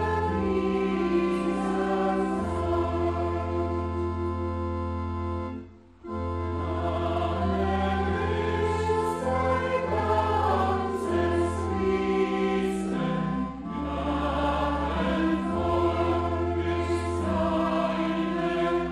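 Soprano voice singing a hymn, accompanied by clarinets and organ over sustained low bass notes, with a brief break between phrases about six seconds in.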